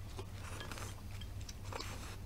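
Faint eating sounds from wide noodles being eaten from small bowls with chopsticks: two short slurps and light clicks of chopsticks against the bowl.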